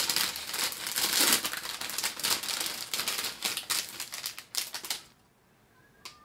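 Clear plastic bag holding model-kit sprues being crinkled and pulled open by hand: a dense crackling of many small clicks that stops about five seconds in.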